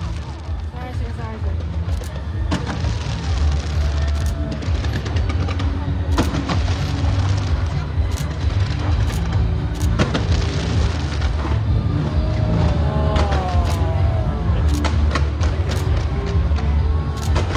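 Fireworks display: sharp bangs of bursting shells at irregular intervals, several in quick succession near the end, over a continuous low rumble.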